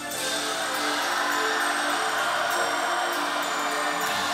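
Melodic death metal band playing live: a quieter instrumental passage in which the bass and drums drop out and sustained chords ring on.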